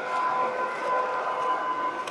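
Train station concourse ambience: the general noise of the hall with a steady hum of even, unchanging tones running through it.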